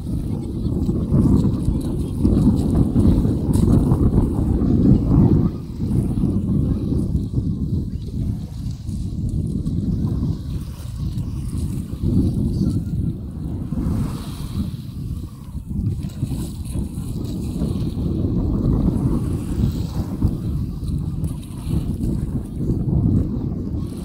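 Wind buffeting the microphone in a low, uneven rumble, strongest in the first five seconds, over small waves washing at the shoreline.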